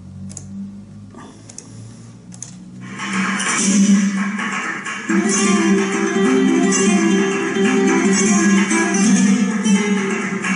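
A few faint clicks, then flamenco guitar playing from about three seconds in, in loud rhythmic chords that grow stronger after about five seconds. It is heard as video playback through computer speakers in a small room.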